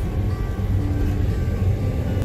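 Steady low road and engine rumble inside the cabin of a moving pickup truck, with background music over it.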